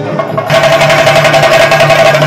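Live procession drum band playing a fast, dense rhythm on stick-beaten drums, over a steady held note; it gets louder about half a second in.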